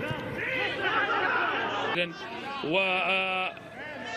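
Speech only: overlapping voices, then a man's voice holding a long drawn-out "wa" sound for under a second around the middle.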